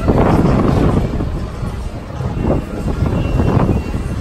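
Busy fairground noise with wind buffeting the microphone in loud swells, and music playing underneath.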